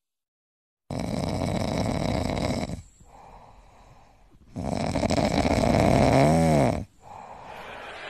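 French bulldog snoring in its sleep: two long, loud snores with a quieter breath between them, the second ending in a brief squeaky whistle that rises and falls in pitch.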